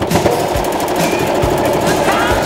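Domestic electric sewing machine stitching at speed: a rapid, even clatter of needle strokes that starts abruptly as fabric is fed under the presser foot. Pop music with singing plays underneath.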